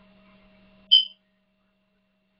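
Faint steady electrical hum, then a single short, high electronic beep about a second in, after which the sound cuts out to dead silence.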